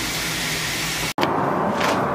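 A pot of meat and vegetables sizzling steadily on the stove. It cuts off abruptly about a second in and gives way to a different, duller steady background noise.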